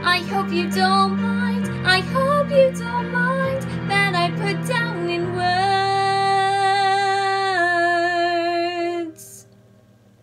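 A girl singing solo over a backing track of low held chords. Her voice runs up and down in pitch, then holds one long note that steps down and ends about nine seconds in.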